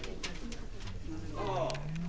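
Voices of people close by: a drawn-out, slowly rising low vocal sound, with a brief bit of higher-pitched chatter near the end and a few light clicks.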